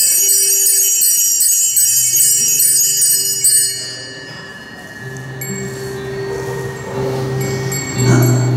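Altar bells, a cluster of small bells, shaken rapidly for about three and a half seconds and then left ringing out, with a few short shakes later, rung at the elevation of the chalice after the consecration. Soft held keyboard notes sound underneath from about two seconds in, swelling near the end.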